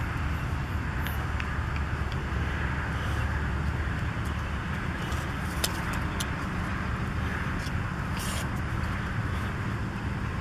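Steady low outdoor background rumble, with a few faint short clicks around the middle and about eight seconds in.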